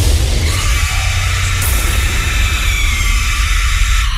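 Horror-style radio jingle sound effect: a sudden noisy burst with a deep rumble and hiss underneath, ahead of the spoken show ident.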